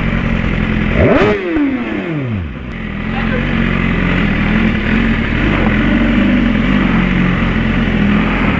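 BMW S1000RR inline-four engine: a quick throttle blip about a second in, with the revs falling away over the next second or so. It then runs steadily at low revs as the bike rolls along slowly.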